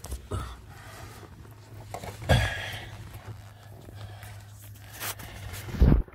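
Handling noise from a phone being moved about in a car's footwell: rustling and scraping with a few knocks, the loudest just before the end, over a low steady hum.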